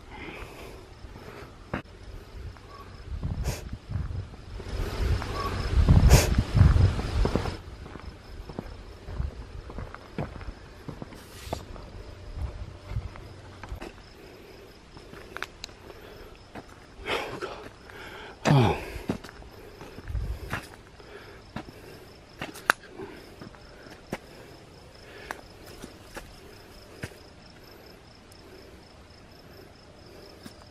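Footsteps on grass and gravel with camera-handling knocks, loudest a few seconds in, over a steady pulsing chirp of crickets. A little past the middle a short sound slides down in pitch.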